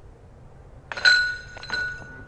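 A putted golf disc hitting the chains of a metal disc golf basket: a sharp metallic clink about a second in that keeps ringing, then a second, softer jangle of the chains.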